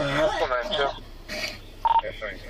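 A person's voice talking indistinctly, then a short single electronic beep near the end.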